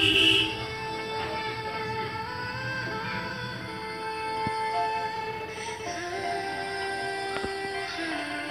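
A song with long held sung notes playing through a small mini MP3 speaker after its repair. Its broken speaker connection has been re-soldered, and it is working again.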